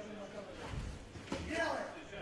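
Indistinct male speech in a large hall, two short stretches: one at the start and one from about a second and a half in.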